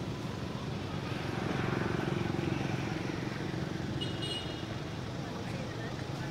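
Steady low rumble of a motor vehicle engine running, with a brief high chirp about four seconds in.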